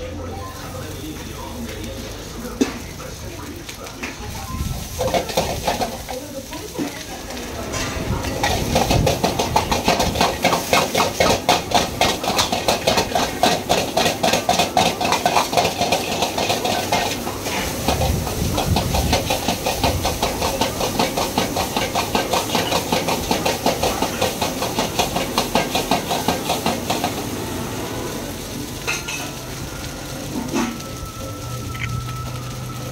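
A metal ladle and spatula scraping and clanking against a wok of frying rice over a hiss of sizzling. The stirring starts in earnest about eight seconds in as a fast, steady rhythm of several strokes a second, and eases off near the end.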